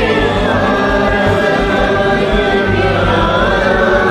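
Many voices singing together over a backing track, their separately recorded parts layered into one chorus.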